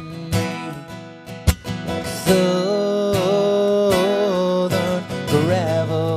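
Acoustic guitar strummed while a man sings, holding one long note with a wavering pitch for a couple of seconds midway, then starting a new phrase near the end.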